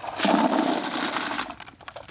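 Blueberries tipped from a steel-and-wood berry picker into a plastic bag: a rushing, rustling pour that lasts about a second and a half and tails off.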